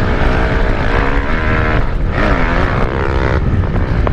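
Dirt bike engine running hard while being ridden, heard from the rider's helmet camera with wind buffeting the microphone. The revs dip briefly about two seconds in and climb again.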